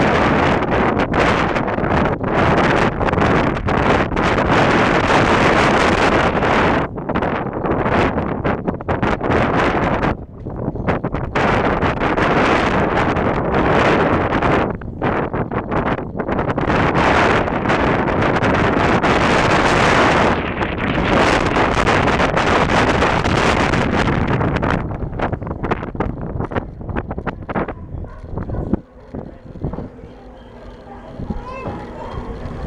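Wind buffeting the microphone of a camera carried on a moving bicycle: a loud, gusting rush that rises and falls throughout and eases off near the end.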